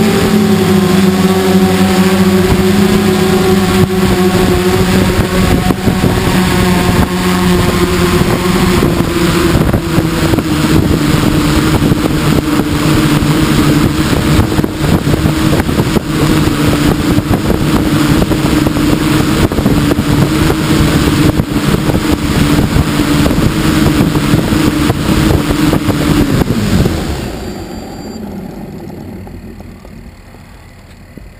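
X8 coaxial octocopter's brushless motors and propellers running with a steady hum over rough rushing noise, as picked up by a camera on the craft. Near the end the motors spin down: the hum falls quickly in pitch and stops.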